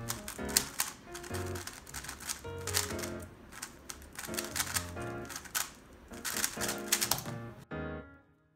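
Fast, irregular clacking of a DaYan TengYun V2 3x3 speedcube, its layers turned rapidly during a timed solve, over background music. The clacking stops shortly before the end.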